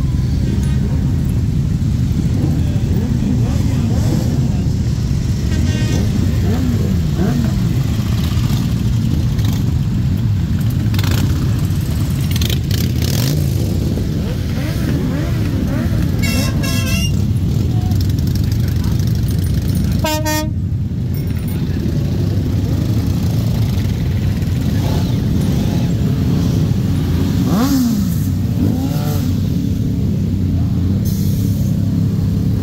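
A slow column of many motorcycles riding past, their engines rumbling steadily with revs rising and falling. A horn toots briefly about halfway through, and a louder horn sounds a few seconds later.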